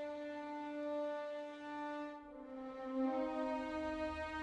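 A small section of second violins from a string sample library playing sustained legato notes: a held note, then a slur to a new pitch a little over two seconds in, swelling louder about three seconds in.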